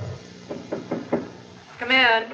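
Four quick knocks on a wooden door, about five a second, followed near the end by a short call in a woman's voice.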